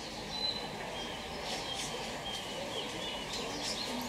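Small songbirds calling outdoors: a run of short, clear whistled notes and quick chirps, several in a row, over a steady low background hum.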